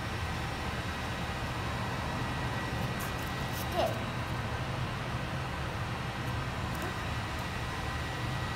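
Steady outdoor background noise with a low rumble, and one brief high-pitched squeak about four seconds in.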